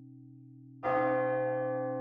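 A steady low musical drone, then a single bell struck a little under a second in, ringing on and slowly fading.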